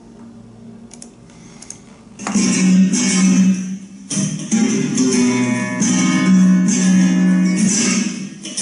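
A flamenco guitar, the Andalusian Barbero 1948 model, starts playing loudly about two seconds in, after a quiet opening with a few faint clicks. The playing pauses briefly just after the four-second mark and then goes on.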